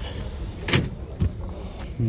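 Open-air car-market ambience: a steady low rumble with a single short, sharp knock about three-quarters of a second in and a fainter knock shortly after.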